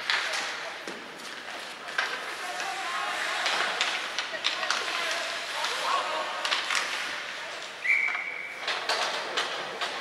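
Ice hockey play in an arena: sticks and puck clacking in scattered sharp knocks over skates and distant shouting voices. About eight seconds in comes a short, steady whistle tone lasting about a second.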